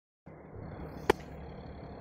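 Steady outdoor background noise with a low rumble, and one sharp click about a second in.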